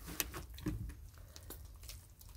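Faint wet handling of a cement-soaked cloth rag being squeezed and lifted out of a tray of cement slurry, with a few short soft clicks.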